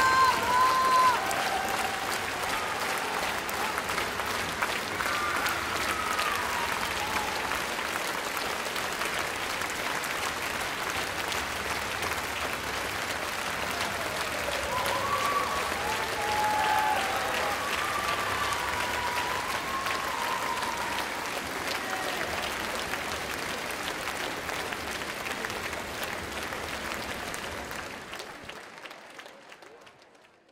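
Concert-hall audience applauding steadily during the bows, with a few voices calling out. The applause fades away near the end.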